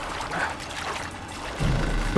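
River water rushing and splashing, with background music.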